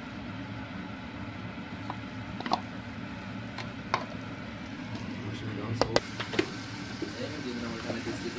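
Grapes tipped into a frying pan of oil, with a wooden spatula knocking against the pan a handful of times over a steady low hum.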